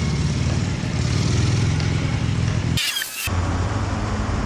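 A steady low engine hum, like a motor vehicle idling. It drops out briefly about three seconds in, when a short high, wavering sound is heard.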